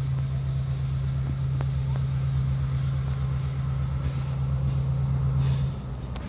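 Diesel locomotive engine, the 16-cylinder EMD of a GP38, running steadily with a deep hum over a low throb. The sound drops away suddenly near the end.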